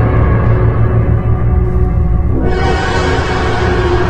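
Horror film score: sustained tones over a loud low drone, with a hissing wash of noise swelling in about halfway through.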